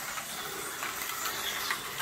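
Toy electric train running on its track: a steady whir of its small motor and wheels, with a couple of faint clicks.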